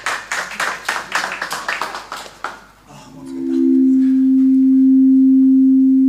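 Fast, irregular sharp claps or strikes for about two and a half seconds. Then, about three seconds in, a steady electronic tone of two low notes swells up and holds, the sustained opening of the next song's backing track.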